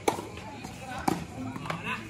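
Tennis ball struck during a rally: two sharp knocks about a second apart, the first the louder.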